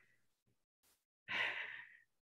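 A person's quiet, breathy sigh, starting past halfway through after a near-silent pause and fading out.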